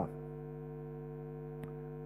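Steady electrical mains hum from the sound system, several low tones held at once, with a faint tick about one and a half seconds in.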